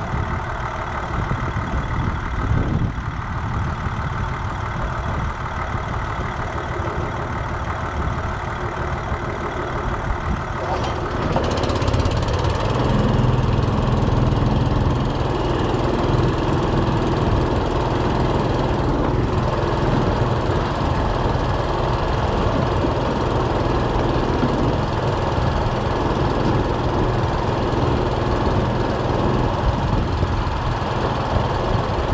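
An engine idles steadily. About eleven seconds in, the small gas engine on the fertilizer transfer pump starts and keeps running, making the sound louder and fuller. The pump is circulating liquid starter fertilizer in the tank to remix it, since the mix separates when it sits.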